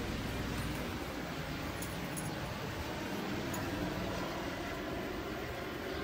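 Steady rushing outdoor background noise with no clear single source; a low rumble underneath fades out about a second in.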